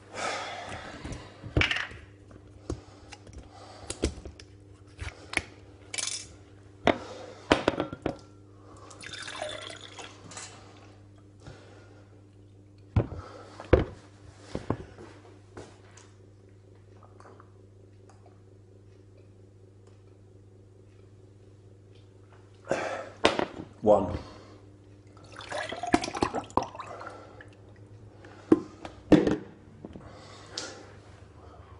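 Aloe vera gel being poured from a plastic jug into a pint glass, with the glass knocking and clinking as it is handled and set down. A steady low hum runs underneath, and the middle of the stretch is mostly quiet.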